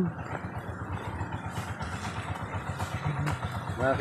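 Small vehicle engine idling steadily, a fast even pulsing.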